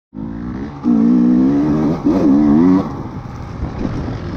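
Enduro dirt bike engine under way, heard from the rider's seat: the throttle opens about a second in, revs hold high, rise and fall through a couple of blips, then back off and run rougher and quieter near the end.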